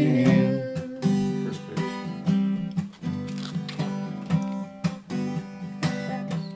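Acoustic guitar strummed steadily in an instrumental break. A sung note trails off in the first half second.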